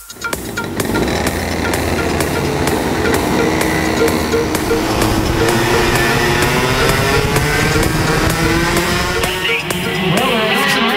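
Electronic dance music with a steady beat laid over the engines of racing go-karts, heard from on board, their pitch climbing and falling as the karts accelerate and slow through the corners.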